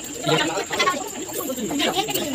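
Quiet voices of people gathered close together, coming off and on.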